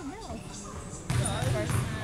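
Voices calling out across a gymnasium, growing louder from about halfway through, with a basketball bouncing on the hardwood court.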